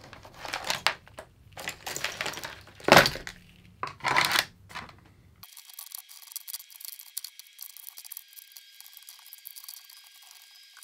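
Hands sorting crocodile-clip leads, wires and plastic battery holders into plastic storage trays: irregular rustling, clattering and tapping of wire and plastic, loudest about three and four seconds in. About halfway through, the sound abruptly turns thin, quieter and high-pitched, with a faint steady tone.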